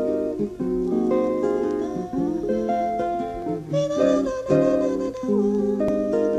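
Acoustic guitar playing the instrumental introduction to a song, plucked chords and melody notes in a steady flow.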